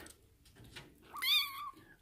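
A kitten gives a single high-pitched meow about a second in, lasting just over half a second.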